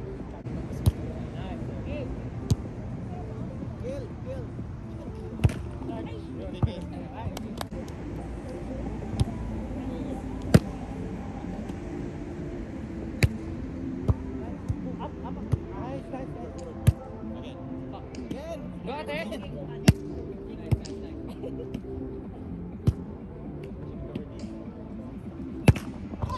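A volleyball being struck by players' hands and forearms in rallies: about fourteen sharp smacks, spaced unevenly a second or more apart, over a murmur of distant voices.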